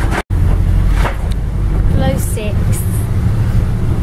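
Bus interior: a steady low engine and road rumble while riding, with a brief cut to silence about a quarter second in.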